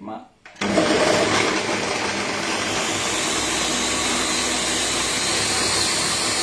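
Countertop electric blender switched on about half a second in, then running steadily at full speed as it liquidises a red, tomato-like mixture.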